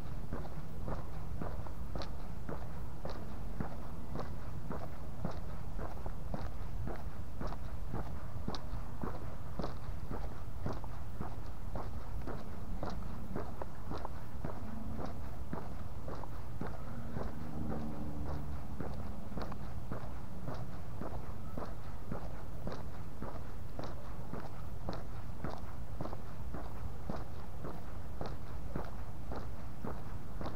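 Footsteps on a paved street at a steady walking pace, with a low steady rumble underneath.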